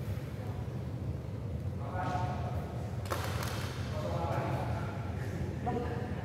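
Men's voices talking indistinctly in a large echoing sports hall, over a steady low hum. A single sharp knock about three seconds in.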